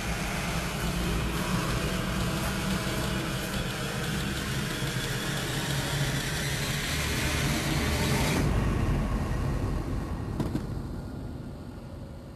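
A steady low rumble with a hiss over it; the hiss drops away about eight seconds in and the rumble fades down toward the end.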